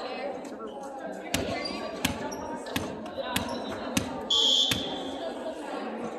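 Volleyballs being struck and bumped in a gymnasium, sharp echoing smacks about every two-thirds of a second, over background voices. A brief high steady tone sounds about four and a half seconds in, the loudest thing heard.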